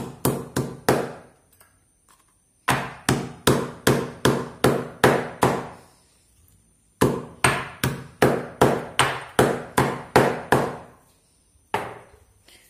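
A hand-held stone pounding food in a stone mortar: sharp, evenly spaced knocks, about four a second, in three runs with short pauses between them, and one last stroke near the end.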